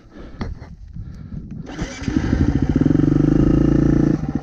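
Dirt bike engine running close by. It grows louder from about two seconds in and then holds steady, after a few light knocks in the first seconds.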